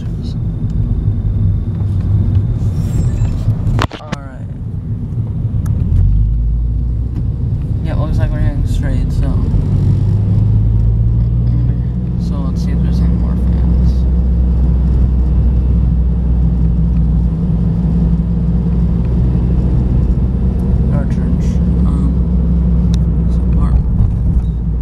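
Low road and engine rumble of a car driving, heard from inside the cabin. The rumble grows about six seconds in and then holds steady. There is a sharp knock about four seconds in.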